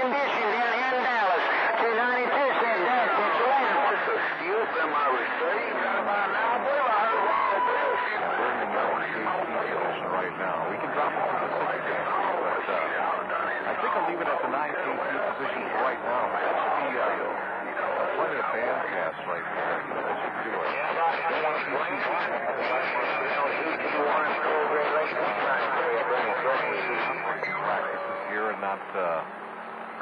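CB radio receiver on channel 28 picking up skip: garbled voices of distant stations talking over one another, cramped into the narrow radio band, with steady heterodyne whistles now and then.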